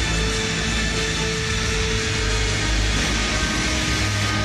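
Hard rock music with electric guitar and heavy bass, playing steadily and loudly as a hype-video soundtrack.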